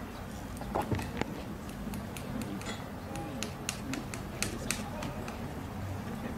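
A farrier's hammer tapping horseshoe nails into a horse's hoof: a series of irregular, sharp light taps.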